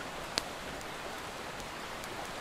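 Wood campfire burning in a stone fire ring: a steady hiss with a single sharp crackle near the start.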